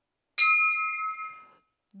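A single bell strike rings out and fades over about a second: the starting signal for a harness race.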